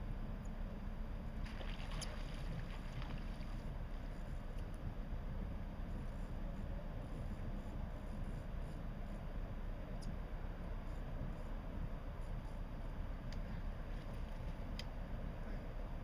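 Steady low rumble of a large self-unloading Great Lakes freighter's engines as it passes, with a few faint clicks.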